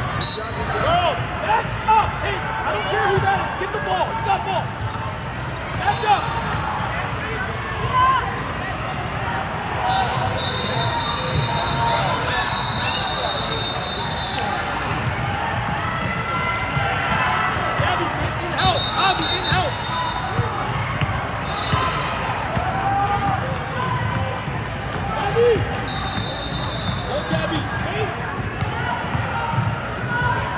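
Basketball game sounds in a large echoing gym: a basketball bouncing on the hardwood court, sneakers squeaking, and indistinct shouts and chatter from players and spectators.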